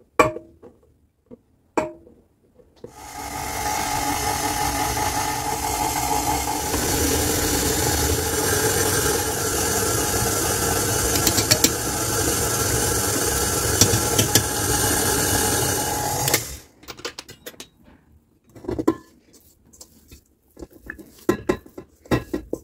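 KitchenAid Artisan stand mixer running steadily as its dough hook kneads yeast dough, starting about three seconds in and stopping about sixteen seconds in. Light knocks of hands and dough against the steel bowl follow.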